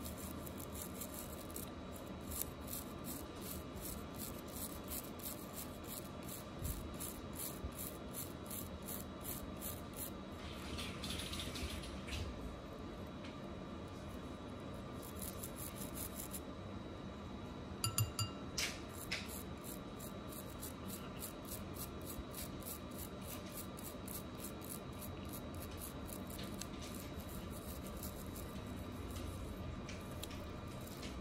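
Toothbrush bristles scrubbing an 18K yellow gold ring with toothpaste in quick, even back-and-forth strokes. A few sharp clicks come a little past the middle.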